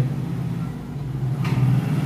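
A steady low hum from a running motor in the background, with one faint tick about one and a half seconds in.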